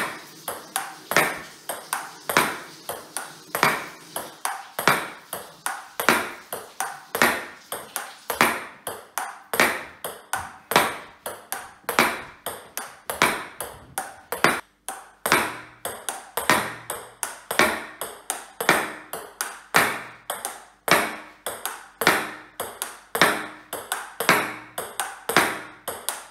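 Table tennis ball in a continuous practice rally against a thin MDF rebound backboard: a steady run of sharp clicks as the ball strikes the bat, the table and the board, the loudest about twice a second with fainter clicks between.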